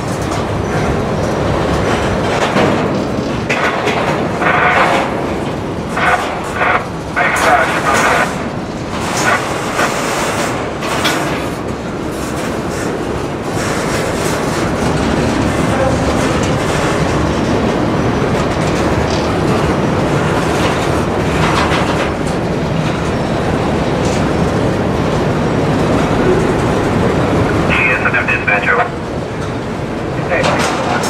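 Freight train of covered hopper and tank cars rolling past at a grade crossing, a steady rumble of wheels on rail with clickety-clack over the joints. Sharp clanks and rattles come in the first ten seconds, and a brief high-pitched squeal near the end.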